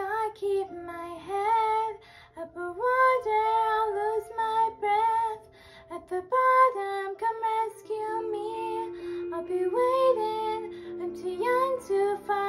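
A girl singing a melody in phrases, with sustained accompaniment chords held underneath.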